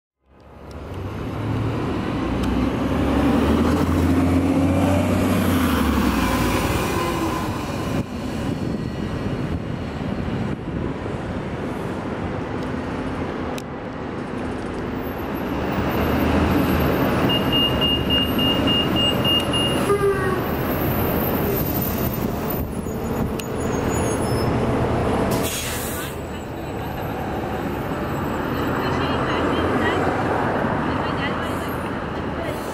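City bus running in street traffic: a 2006 New Flyer D40LFR with a Cummins ISM diesel engine and Voith automatic transmission, its engine loudest in the first several seconds. A run of short high beeps, about four a second for a couple of seconds, comes a little past halfway, and a brief hiss follows near the end.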